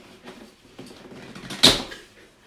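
A blade scraping faintly along the taped seam of a cardboard box, then one loud, short rip of cardboard and tape about a second and a half in as the box is pulled open.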